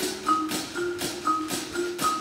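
Percussion ensemble playing marimbas and other mallet percussion: a steady pulse of struck notes about two a second, with a short higher figure over lower ringing notes.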